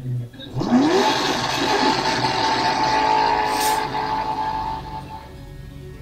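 A loud car engine revving up sharply, then running hard at high revs for a few seconds before fading away.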